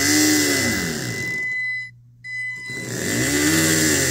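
The twin electric drive motors of an RC submarine's watertight cylinder spinning up and back down under throttle, twice, with a brief stop about two seconds in. A thin steady high whine runs alongside.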